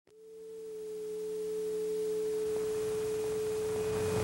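A steady pure electronic tone at one unchanging pitch, fading in over about the first second and then holding level.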